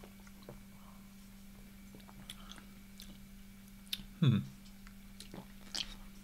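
Quiet mouth sounds of people sipping and tasting beer: small scattered lip smacks and swallowing clicks over a steady low hum, with an appreciative "hmm" about four seconds in.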